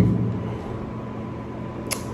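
Steady low hum of room noise in a pause between words, with a brief hiss just before the end.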